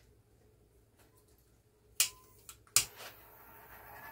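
Two sharp clicks about three-quarters of a second apart, then a faint steady hiss.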